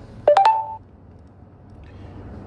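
Three quick electronic beeps stepping up in pitch, each starting with a click, lasting about half a second in all, typical of a phone's keypad or notification tones. A low steady hum runs underneath.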